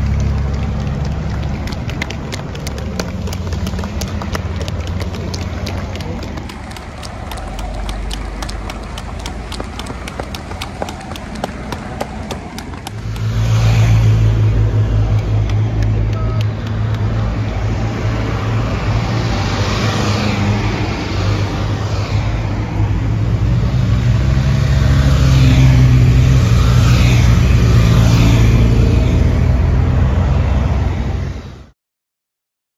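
Cars of a slow motor procession passing close by, engine and tyre noise over the street's hum. The first half carries a run of sharp clicks; about halfway through the sound jumps to a louder, deeper rumble as the vehicles go past near the microphone.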